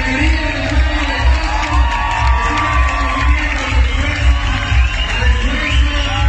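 Music with a steady bass beat, with a crowd cheering and clapping for a winner.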